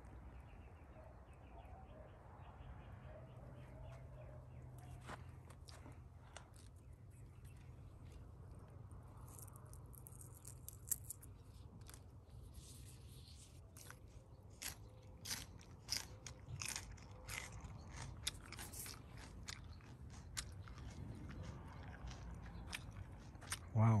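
Someone biting and chewing a raw, crisp pea pod: a run of faint, crisp crunches that grow more frequent in the second half.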